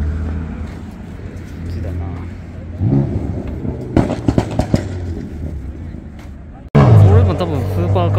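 Car park full of cars, with a steady low engine hum under people's voices and a few clicks in the middle. Near the end the sound cuts abruptly to a louder mix of engine noise and voices.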